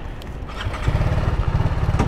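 Motorcycle engine that grows louder about half a second in, then runs with a steady, even low pulse.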